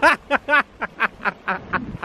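A man laughing hard: a rapid run of about eight short bursts of laughter, roughly four a second.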